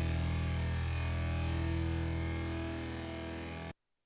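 Distorted electric guitar holding the final chord of a rock song, ringing steadily and slowly fading, then cut off abruptly near the end.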